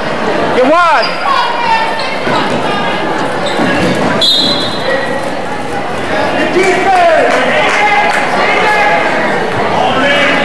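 Gymnasium crowd shouting and cheering during a basketball game, with a basketball bouncing on the hardwood floor. One loud yell rises and falls about a second in, and a short shrill high tone sounds about four seconds in.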